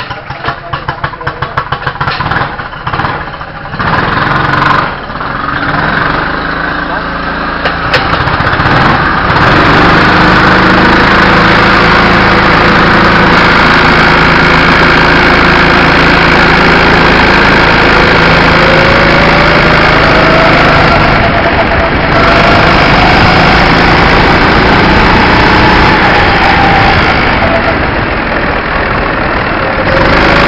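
Rental go-kart's engine heard on board: running with an uneven, pulsing beat at first, then loud and steady at full throttle from about ten seconds in, its pitch climbing through the lap and dipping briefly a little after twenty seconds as the throttle is lifted.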